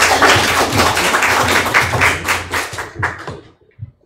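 Audience applauding, a dense patter of handclaps that dies away about three seconds in.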